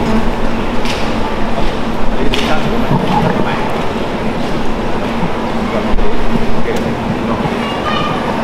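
Steady noisy hiss and hum from an open microphone running through a portable busking amplifier, with a few short knocks as the microphone on its stand is handled; no music is playing.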